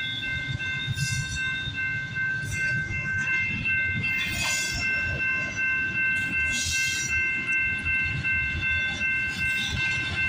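Double-stack container freight train rolling past: a steady rumble and clatter of wheels on the rails, with several steady high tones held over it and a couple of brief hisses.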